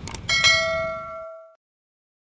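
Subscribe-button sound effect: a quick click, then a notification bell ding that rings out and fades over about a second.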